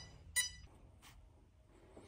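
A single short electronic beep about half a second in, then faint room noise.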